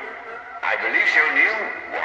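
Speech through a radio-style channel: a voice made thin and narrow-band like a space-to-ground radio transmission, with a steady tone running behind it. The voice starts about half a second in.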